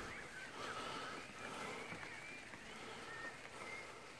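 Faint outdoor background with a few short, faint high chirps scattered through it.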